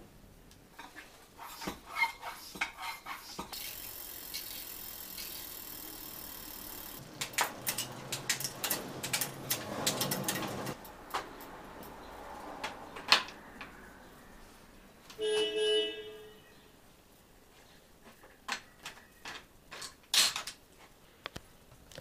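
Bicycle workshop handling sounds: scattered clicks and knocks of tools and bike parts, a steady hiss lasting about three seconds, and a short pitched toot about fifteen seconds in.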